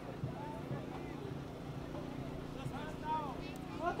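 A crowd talking quietly, a few faint voices standing out, over a steady low hum of city traffic.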